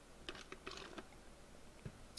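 Faint taps of computer keyboard keys, several in quick succession in the first second, then a single soft low knock near the end.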